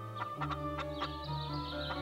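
Chickens clucking over background music of held notes, with a low bass note coming in about half a second in.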